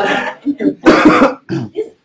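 Several short bursts of laughter after speech trails off, the loudest about a second in.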